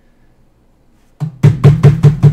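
A hand slapping a hard surface in a fast run of loud knocks, about five a second, starting about a second in: a wrestler-style tap-out gesture of giving up.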